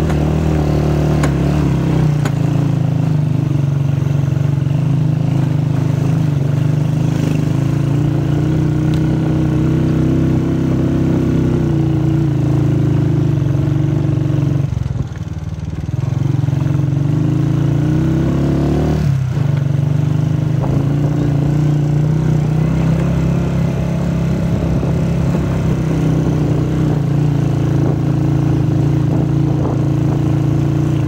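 Motorcycle engine running steadily under load on a rough dirt track. About halfway through it briefly drops off as the throttle eases, then picks up again, with a shift in pitch a few seconds later.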